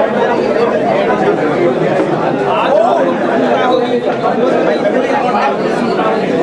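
Many people talking at once: a steady, unbroken babble of chatter with no single clear voice.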